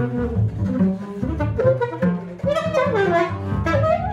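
Saxophone and double bass improvising together in free jazz: the bass holds low notes underneath while the saxophone plays a line that bends and slides in pitch, growing stronger about halfway through.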